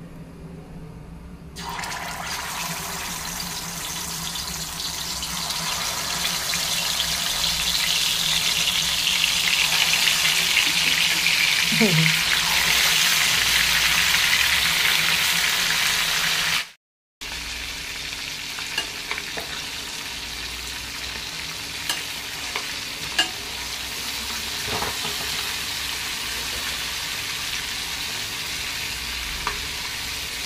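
Masala-marinated chicken leg pieces sizzling as they fry in hot oil in a stainless steel pan. The sizzle starts suddenly about two seconds in, as the chicken goes into the oil, and grows louder for the next several seconds. After a brief cut-out near the middle it goes on steadier and a little quieter, with a few sharp clicks.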